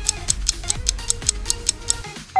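Quiz countdown-timer music: a steady ticking, about five ticks a second, over a beat of deep drum hits.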